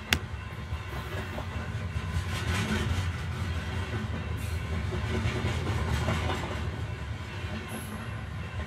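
A steady low mechanical rumble that opens with a single sharp click.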